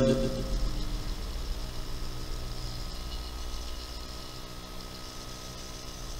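A man's chanted voice holds its last note and dies away in the first half second. Then a steady low hum with faint hiss, the background of the recitation recording, slowly growing quieter.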